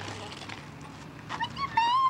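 A young child's high-pitched squealing voice, starting about one and a half seconds in and rising, then falling in pitch.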